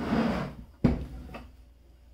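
Side cover of a Growatt inverter being slid off its housing: a short scraping slide, then a sharp clack a little under a second in as it comes free, with some light rattling after.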